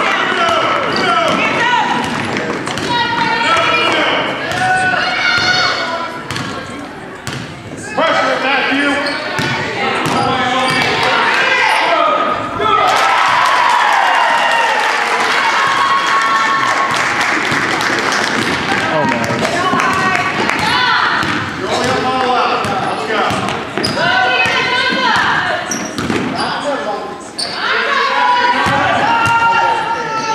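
A basketball being dribbled on a hardwood gym floor during a youth game, amid a steady mix of spectators' and players' voices and shouts in the gym. The voices grow denser and louder around the middle.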